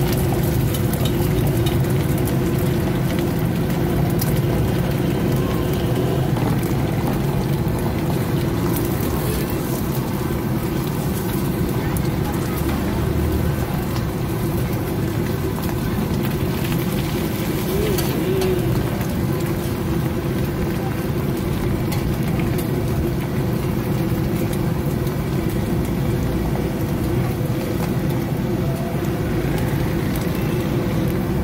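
Steady low rumble of a busy street food stall, with indistinct voices in the background, while eggs fry on a large flat griddle.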